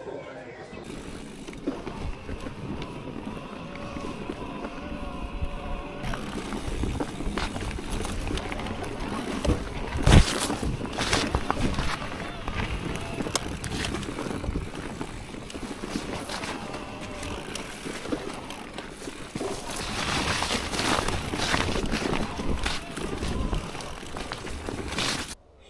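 E-bike ridden over a rough forest track: from about six seconds in, a continuous rumble and rattle of tyres and bike over bumps, with many small knocks and one sharp, loud knock about ten seconds in.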